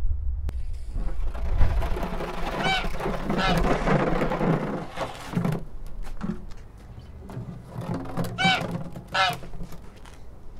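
Goose honking: two pairs of calls, about three seconds in and again near the end. Under them a low wind rumble on the microphone and scattered knocks as acoustic guitars are picked up.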